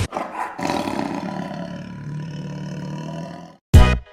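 A long lion-roar sound effect that starts loud and slowly fades over about three and a half seconds. It breaks off just before a loud beat of music starts near the end.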